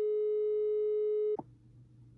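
Steady electronic test-card tone from a "please stand by" sound effect: one held pitch with overtones that cuts off sharply about one and a half seconds in, followed by faint room tone.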